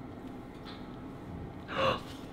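Quiet gym room tone, then near the end one short, sharp breath from a man swinging into a muscle-up on a pull-up bar.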